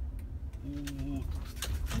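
Steady low engine and road rumble inside the cabin of a moving car. About half a second in, a person gives a short, flat hummed 'mm', and a few sharp clicks follow.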